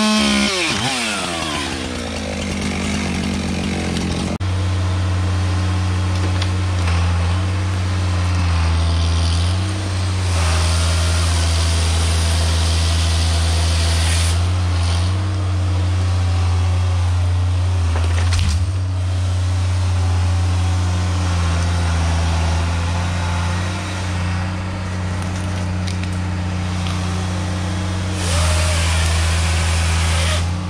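A Husqvarna chainsaw revving through a log cut for the first second or so, its pitch rising and falling, then tailing off. About four seconds in, this gives way to the steady diesel engine of a tracked logging machine with a processor head, its note stepping up and down as the boom and head work logs.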